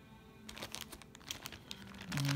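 Clear plastic bags crinkling in a run of quick, crackly rustles as bagged fabric pieces are handled, starting about half a second in.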